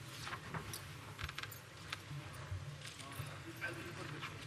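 Room ambience of a crowded assembly chamber: a low murmur of voices with scattered small clicks and rattles at irregular moments.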